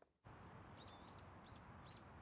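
After a brief moment of dead silence, faint outdoor ambience comes in, with small birds giving short, quick chirps from about a second in.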